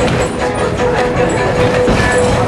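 Wooden narrow-gauge passenger coach running along the track, heard from inside the car: a steady rumble and clatter of wheels on rail with a steady whine running through it.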